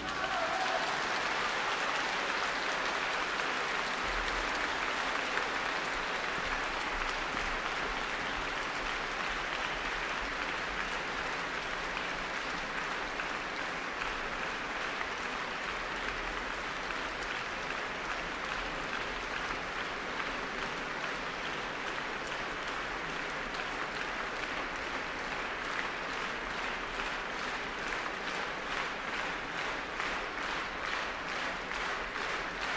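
A large concert-hall audience applauding steadily, a dense mass of clapping that eases slightly over the half-minute, in answer to the end of a piano performance.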